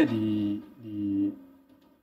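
A man's voice drawing out two long hesitation vowels, fading out near the end.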